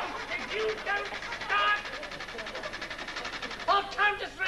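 A man's voice in short exclamations, over a fast, even rattle that stops just before the end.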